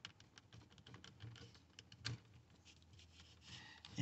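Faint plastic clicks and handling noise as a wiring-harness plug is pressed at its locking tab and worked out of a car's master power-window switch, with a slightly sharper click about two seconds in.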